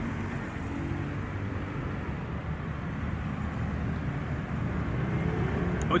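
Steady low rumble of street traffic, with no distinct sounds standing out.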